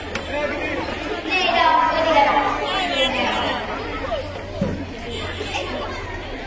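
Speech over the chatter of a large crowd of schoolgirls, several voices overlapping.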